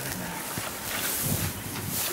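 Dogs digging and rummaging in loose hay: a dry, rustling scuffle with a faint knock about half a second in.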